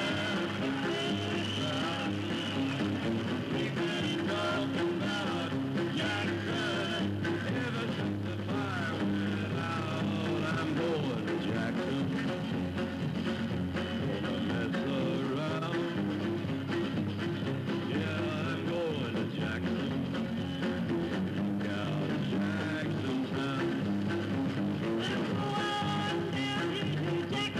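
A man and a woman singing a country duet over acoustic guitar and a steady band accompaniment.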